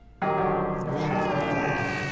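A sudden loud, sustained ringing tone from the film's soundtrack sets in a moment after the start and holds, slowly fading.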